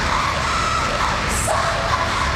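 Loud live electronic music from a band on drums and electronics, dense and continuous, with held tones running through it and a short burst of high hiss about one and a half seconds in.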